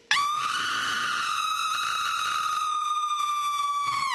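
A person's long, high-pitched scream on an open "aah", held on one almost steady pitch after a brief break, and falling away near the end.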